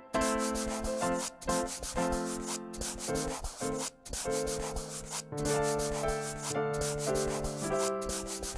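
Scratchy scribbling of coloring-in strokes, like a marker rubbed back and forth on paper, in quick runs broken by short pauses. Sustained notes of a simple background melody sound underneath.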